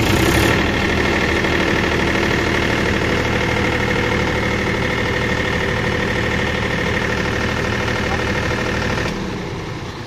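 Diesel generator set's engine running steadily just after starting, a loud, even engine hum. It drops a little in level near the end.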